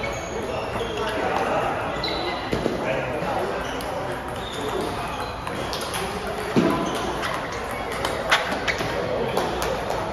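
Table tennis ball clicking off rubber paddles and the table top during a rally, sharp quick ticks that come thickest in the second half, the loudest about six and a half seconds in, with a reverberant hall behind them.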